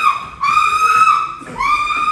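Loud, high-pitched whistle-like notes, each held steady for about half a second and repeated roughly once a second; the middle note drops in pitch as it ends.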